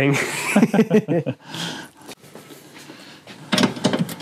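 A man's voice and laughter in the first second or so, then quieter handling sounds, with a few sharp clicks and knocks near the end.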